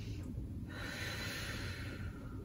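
A person's long, audible breath, a single airy breath lasting over a second that starts most of a second in, over a low room hum.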